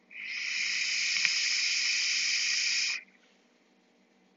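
A long draw on a box-mod vape: a steady, airy hiss of air pulled through the fired atomizer for about three seconds, with a single small pop about a second in, and then it stops abruptly.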